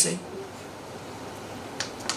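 A man's word trails off, then steady room hiss through the lectern microphone, with one short sharp click near the end.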